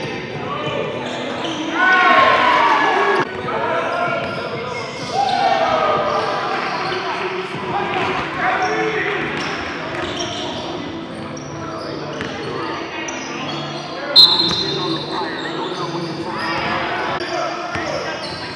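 Indoor basketball game: a basketball bouncing on the gym floor amid players' voices calling out, in a large echoing hall. A sudden short high-pitched tone about fourteen seconds in is the loudest moment.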